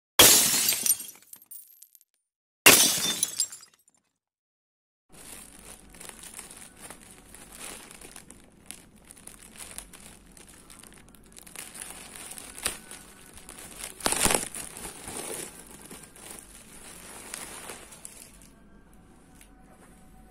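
Two loud glass-shattering sound effects, about two and a half seconds apart. After a short silence comes a long stretch of crinkling and rustling plastic packaging, with many small crackles, as a polyester jersey is pulled out of its clear plastic bag.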